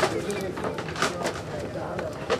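Indistinct murmur of voices with a few short knocks or clicks scattered through.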